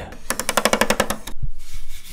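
Rapid mechanical clicking, about a dozen clicks a second for about a second, from the controls of an unplugged Polivoks synthesizer worked right at the microphone, followed by a brief hiss of rubbing noise.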